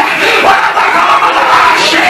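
Loud group shouting in a church service: a man's voice shouting through a microphone and PA over congregants crying out together.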